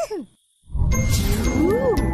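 Cartoon music cue: tinkling chimes over a bass note, with a sliding tone that climbs and then drops back. It comes in after a brief silence, as a build-up to a reveal.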